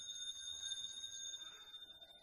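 Altar bell ringing at the elevation of the consecrated host, a clear ringing tone that fades away near the end.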